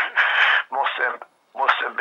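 Conversational speech with a thin, narrow sound, as over a call line, broken by a brief pause about one and a half seconds in.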